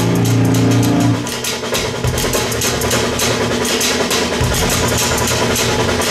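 A live band plays through a drum kit and amplified instruments. A held chord rings until about a second in and breaks off. The full band comes back in with steady drum and cymbal hits.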